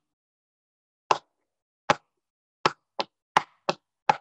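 A run of six sharp, slap-like taps, about a second apart at first and coming faster toward the end, beating time just before a song begins.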